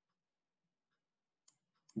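Near silence: quiet room tone in a pause between spoken phrases, with one faint click about one and a half seconds in.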